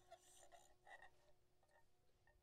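Near silence: faint scattered rustles, with one note from the ensemble dying away in the first second and a half.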